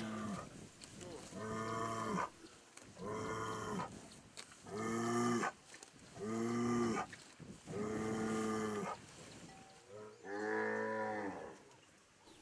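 Cattle mooing over and over: about seven drawn-out moos, each roughly a second long, coming one after another about every second and a half.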